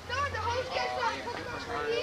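A group of children talking and chattering over one another at close range.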